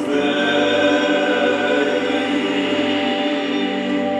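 Several men singing a Horňácko (Moravian) folk song together in harmony, drawing out long held notes.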